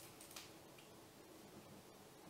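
Near silence: room tone with a couple of faint clicks about a third of a second in.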